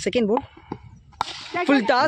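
A single sharp crack about a second in: a cricket bat striking the ball as the batsman plays the delivery, between words of the commentary.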